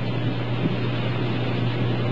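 Smoke tunnel running: a steady rushing of air with a constant low hum from its blower.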